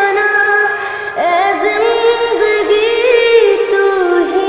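A woman singing the slow, ornamented melody of a Hindi film song, holding long notes that glide and waver in pitch, with no clear words.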